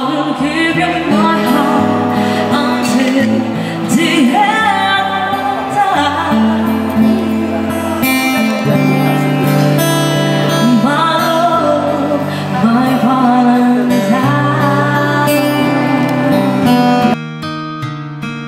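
A woman singing into a handheld microphone through a PA, accompanied by an acoustic guitar. About a second before the end her voice stops and the guitar plays on alone, quieter.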